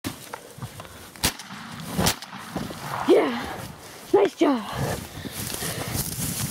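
Close-up scuffle in the grass as a wild turkey tom comes at a hunter behind a fan decoy: rustling and two sharp knocks in the first couple of seconds, then a man's startled shouts, once about three seconds in and twice more just after four seconds.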